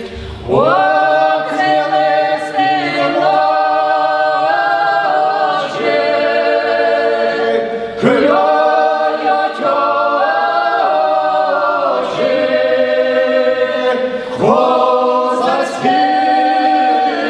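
Male choir singing a Ukrainian Cossack folk song a cappella, voices in harmony holding long notes. The phrases break off and start again about four times.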